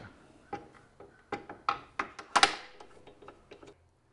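Irregular clicks and knocks of the Porter-Cable OmniJig's stabilizer bar and clamps being set back in place and locked down on the metal jig, about a dozen in all, the loudest about two and a half seconds in.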